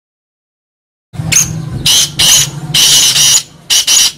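Black francolin (kala teetar) calling: a run of five or six short, scratchy high notes that starts about a second in, over a low steady hum.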